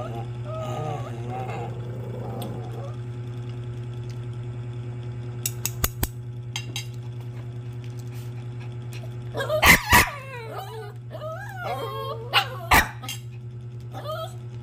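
Dog barking and yipping: two sharp barks close together about ten seconds in, yelping cries after them, then two more barks soon after. Before that, a few light clicks of a spoon against a plate, over a steady low hum.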